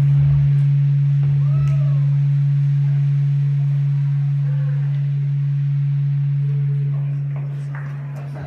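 A loud, steady low hum from the band's stage amplification, holding one pitch without change, with faint voices in the hall.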